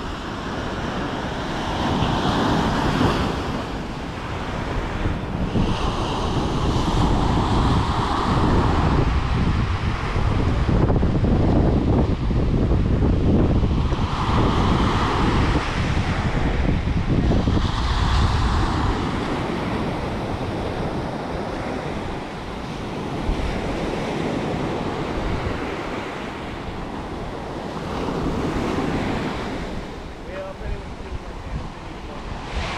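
Ocean waves breaking and washing up a sand beach, the rush swelling and easing several times, with wind rumbling on the microphone, heaviest midway through.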